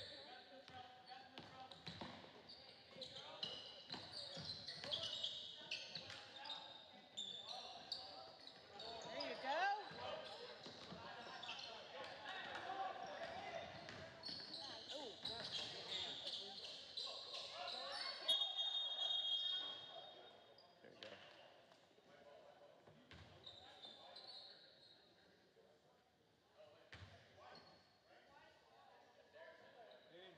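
A basketball being dribbled on a hardwood gym floor during play, with players and spectators calling out and the sound echoing around the gym. About eighteen seconds in, a referee's whistle blows and the action goes quiet as play stops for a free throw.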